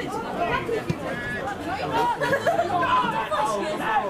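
Several people talking and calling out at once, voices overlapping in a steady chatter, with a brief thump about a second in.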